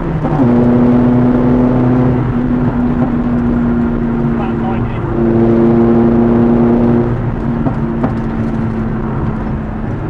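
Small car engine pulling along the road, heard from inside the cabin. Its note drops sharply right at the start, as at an upshift, then holds fairly steady, dips briefly about five seconds in and drops again about seven seconds in.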